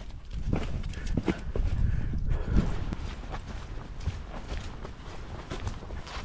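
Footsteps of a person walking on an outdoor path and steps: an irregular run of light knocks over a low rumble.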